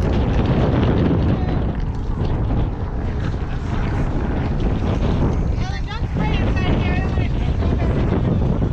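Strong wind buffeting the camera's microphone: a loud, steady, rumbling roar. Voices of people nearby are heard faintly under it, mostly a few seconds in.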